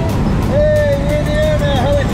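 Steady drone of a small jump plane's engine heard inside the cabin, with a person's voice holding one long, wavering call over it from about half a second in.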